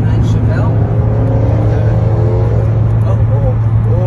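Steady low drone of road and engine noise inside a moving car's cabin, with voices rising and falling over it.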